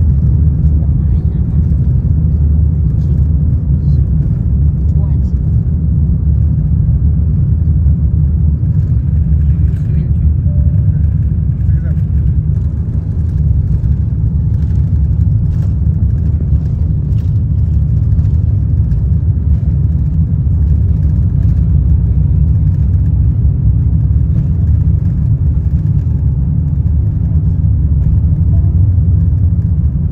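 Steady, loud, deep rumble of an Airbus A350-900's Rolls-Royce Trent XWB engines at takeoff power, with runway rumble, heard from inside the passenger cabin during the takeoff run.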